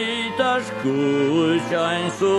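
Slow song with a voice holding long notes that glide from one pitch to the next, without clear words.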